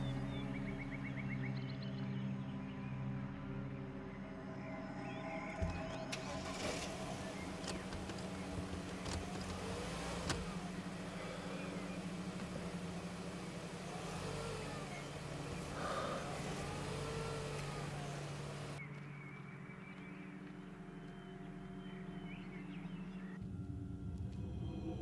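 A car running, heard from inside the cabin: steady engine and road noise under a low, droning music score, with a couple of sharp ticks. A few seconds before the end the car noise drops away and the low drone carries on alone.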